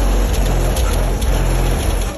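Car audio subwoofers in a Chevrolet's trunk playing very loud, deep bass, with a dense noisy hiss spread over it.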